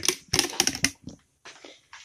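Gypsum board scraping as it is worked into place, a dry rapid rasp in two short bursts in the first second, followed by a few faint knocks.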